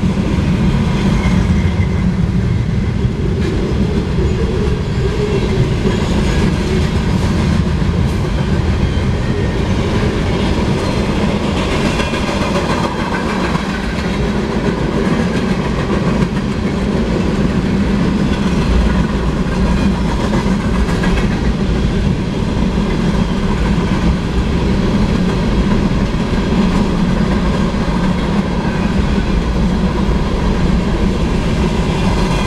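Freight cars of a mixed manifest train (gondolas, a centerbeam flatcar, covered hoppers) rolling steadily past: a continuous rumble of steel wheels on rail, with a clickety-clack as the wheels pass over the rail joints.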